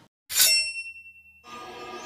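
Outro logo sound effect: a sudden metallic ding about a third of a second in that rings on and fades out, then a swell that grows louder near the end.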